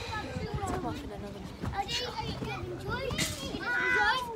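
Several children's voices overlapping in play, calling and chattering, with one louder shout about three seconds in.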